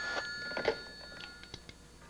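Telephone ringing, cutting off about one and a half seconds in as the handset is lifted, with a few clicks and knocks of the receiver being handled.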